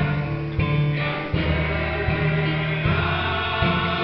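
Mixed church choir of men and women singing a gospel worship song in held, sustained notes, led by a male singer on a microphone.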